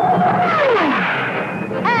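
Cartoon fly-by sound effect for a witch's broom zooming past: a rushing whoosh with a whistling tone that holds, then drops steeply in pitch over about a second.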